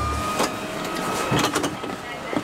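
Inside a Tobu city bus stopped to let passengers off: the bus runs with a steady high-pitched whine, with scattered knocks and clicks as people step out past the fare box.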